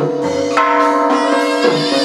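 Chầu văn ritual music in an instrumental passage: the lute and percussion ensemble plays sustained, ringing bell-like tones, with a struck beat about once a second.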